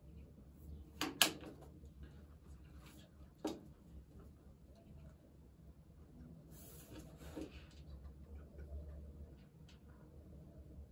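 Small desk sounds over a low steady room hum: a couple of sharp clicks about a second in and another at about three and a half seconds as a pen is handled, then a highlighter drawn across a book page for about a second midway.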